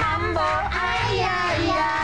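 A mambo song: high, child-like puppet voices singing with gliding pitch over a backing track with a steady bass beat.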